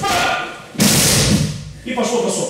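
A judoka's body landing on the tatami mat from a demonstrated throw. It is one heavy thud about a second in that fades quickly, with voices just before and after.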